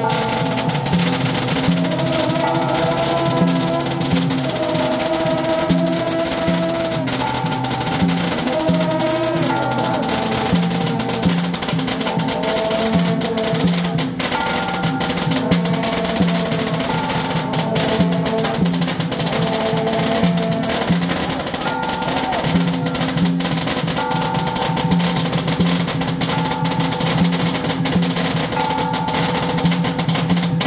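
Taiwanese temple-procession music: a held, wavering melody line over dense, busy drums and percussion, running without a break.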